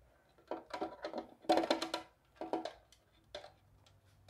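Plastic pet carrier lid knocking, creaking and rasping against its clear plastic box as it is lifted and tilted open. There are four separate bursts, the loudest a short rasping creak in the middle.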